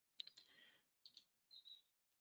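Near silence with a few faint computer mouse clicks, the sharpest just after the start and two smaller ones about a second in.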